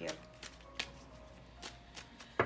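A deck of tarot cards being shuffled by hand: a few soft, scattered card clicks and snaps, over quiet background music.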